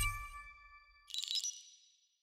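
Studio logo sting: a deep hit with several ringing tones fades out, then about a second in a short, bright, high-pitched chime-like twinkle rings and dies away.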